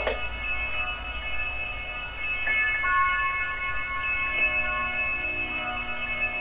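Soft ambient electronic background music of held, chime-like tones, with a new set of sustained notes coming in about two seconds in.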